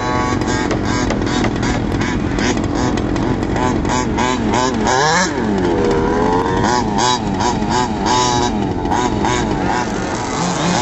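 Small two-stroke gas engines of 1/5-scale HPI Baja RC trucks revving up and down over and over. About five seconds in, the pitch falls and climbs back in one long sweep.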